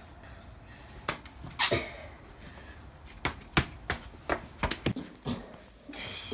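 A series of about ten irregular light taps and knocks, two at first and then coming faster from about three seconds in.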